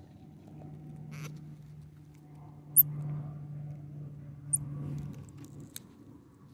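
A low steady hum fades in and out, with two very short high chirps and a few small clicks over it.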